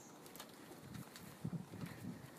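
Faint bird calls: several short, low-pitched calls in the second half, over a quiet background.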